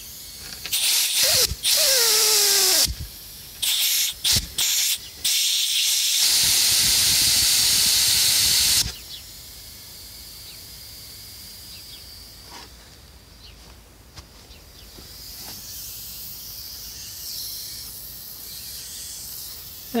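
Pressurised air hissing out of a calcium-filled tractor tire's inner tube at the valve stem, in three loud bursts, the first with a short falling whistle. After that comes a fainter steady hiss. The leak is from the tube itself, which the owner takes for a hole in the tube with calcium now between tube and tire.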